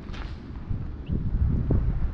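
Wind buffeting the microphone: a low, uneven rumble that grows louder about two-thirds of a second in.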